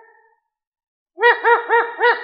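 Chirp-like pitched notes in quick groups of about four, each note bending up then down in pitch. The tail of one group fades away at the start, and a new group begins about a second in and rings on.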